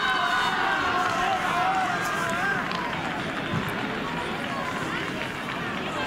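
High-pitched shouting voices across an outdoor football pitch: several long, drawn-out calls over the first couple of seconds, then a steady background of distant voices and outdoor noise.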